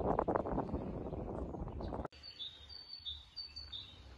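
Small birds chirping a short, high phrase three times in trees, over a faint low hum. Before that, for about the first two seconds, a louder rushing noise with irregular knocks that stops abruptly.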